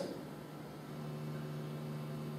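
Room tone in a pause between words: a steady low hum with a faint even hiss.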